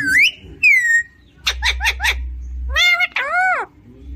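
Alexandrine parakeet calling: a rising then a falling high whistle in the first second, then a quick run of short chattering notes and two arching, word-like calls, with a low rumble under the chatter.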